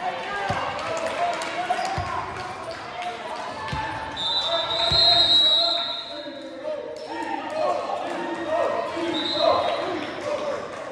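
A volleyball thumping on a hardwood gym floor four times in the first five seconds, amid players' voices echoing in the gym. A referee's whistle sounds for about a second midway and briefly again near the end, the signal for the next serve.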